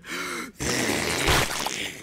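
A cartoon character's voice letting out a long, breathy sigh: a brief voiced note, then a loud rush of breath lasting over a second that stops just before the next line.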